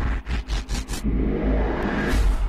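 Dramatic trailer sound effects: a rapid run of four or five whooshing hits in the first second over a deep rumble, which then holds steady.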